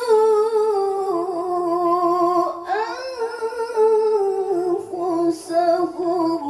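A woman's voice reciting the Qur'an in the melodic tilawah style into a microphone, holding long ornamented notes with vibrato that step slowly downward in pitch, with a brief break about halfway through.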